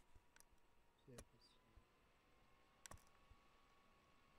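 Near silence broken by three faint, sharp clicks spread over a few seconds, the strongest near three seconds in, over a faint steady high hum.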